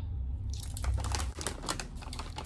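Foil herb pouches and a metal measuring spoon being handled with dried cut root: a quick, irregular run of small crinkles and clicks, starting about half a second in.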